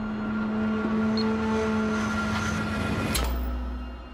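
Trailer score and sound design: a steady drone of several held tones, broken by a sharp hit about three seconds in, after which a deep low rumble takes over.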